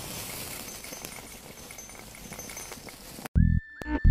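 A hiss-like, noisy sound effect from a TV title sequence, easing off slightly, cuts off suddenly about three seconds in. Electronic music with heavy, pulsing bass beats starts right after.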